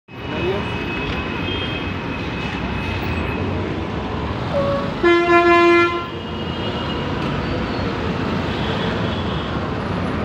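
Busy city road traffic running steadily, with one loud vehicle horn blast about five seconds in lasting just under a second, and a short higher toot just before it.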